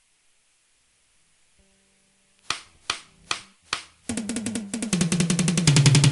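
Near silence, then four sharp evenly spaced clicks counting in, then a fast drum roll on a drum kit that grows steadily louder as the band begins a song.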